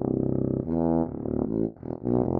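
Sousaphone playing a short phrase of low brass notes: one held note, then a higher note and a few shorter notes.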